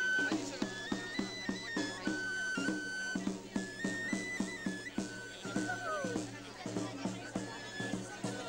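Pipe and tabor played by one musician: a high, shrill three-hole pipe plays a stepwise folk melody over a steady beat on a rope-tensioned side drum.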